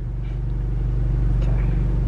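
Car engine running, heard inside the cabin as a steady low hum that grows slightly louder.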